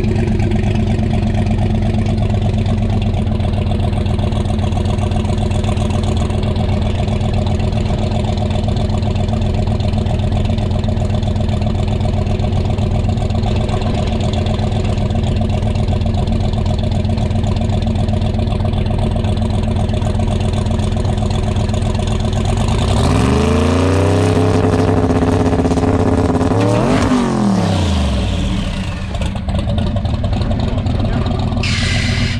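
Twin-turbo big-block Chevy V8 in a C10 drag truck idling steadily, then revved up twice near the end, the pitch rising and falling back each time.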